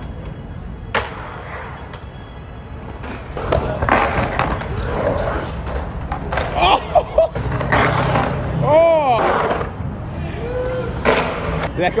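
Skateboard wheels rolling and carving on a concrete bowl, with a sharp click about a second in. People's voices shout over it from about three seconds in.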